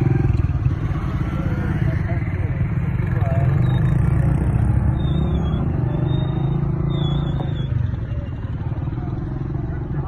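A small motorcycle engine running with a steady low rumble, with voices of people nearby mixed in.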